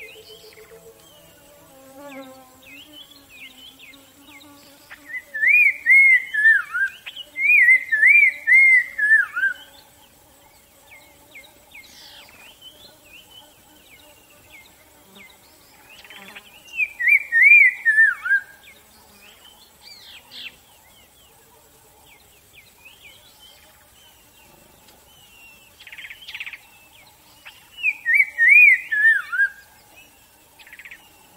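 Birdsong: a songbird sings a loud phrase of quick notes, each rising and falling, that step downward in pitch. It repeats four times, twice close together early on, once in the middle and once near the end, with fainter chirps in between.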